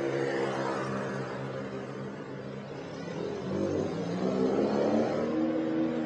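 A motor vehicle's engine running, its pitch stepping up and getting louder as it revs about halfway through, then easing off near the end.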